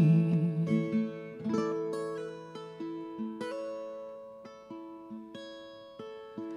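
Solo acoustic guitar picked between sung lines, single notes and chords ringing out one after another and getting steadily softer.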